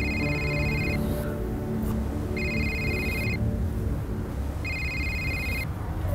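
A mobile phone ringing with an electronic ringtone: three rings, each about a second long and a little over two seconds apart.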